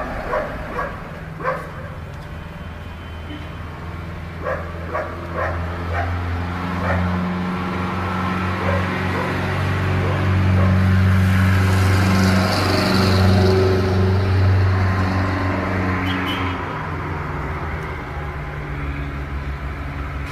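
A dog giving a series of short barks in roughly the first nine seconds, over a steady low drone that swells loudest in the middle.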